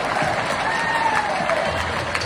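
Audience applauding, with a few voices rising over the clapping.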